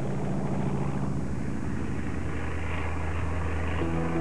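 Steady drone of a B-29 bomber's four piston engines and propellers in flight. Music comes in near the end.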